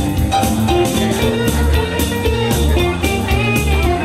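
Live country band playing an instrumental break: a guitar lead with bending notes over a steady bass and drum beat.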